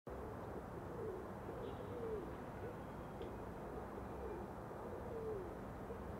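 A pigeon cooing faintly, in repeated short low calls, over a low background rumble.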